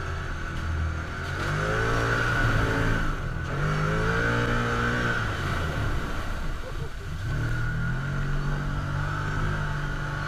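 Can-Am Commander 1000 side-by-side's V-twin engine, heard from the cab, rising in pitch twice as it accelerates down the trail. Around the middle it ploughs through a deep water hole, with water splashing over the windshield, then it settles to a steady cruise.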